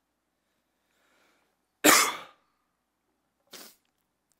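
A man with a cold coughing: a short intake of breath, one loud cough about two seconds in, then a smaller cough near the end.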